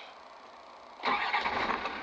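Land Rover Defender 90 Td5's five-cylinder turbodiesel engine starting about a second in, catching at once and settling into a steady run, heard from inside the cab. It starts beautifully.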